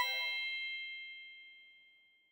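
A chime sound effect: one struck bell-like note ringing with several clear tones at once, dying away over about two seconds.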